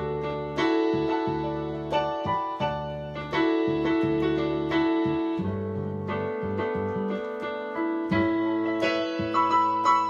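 Electronic keyboard with a piano voice playing gospel chords: full chords held over a bass line, changing about once a second.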